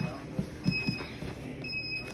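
Grappling bodies and gi cloth on a padded mat during a rolling shoulder sweep: a few soft, short thumps in the first second as the grapplers roll and land.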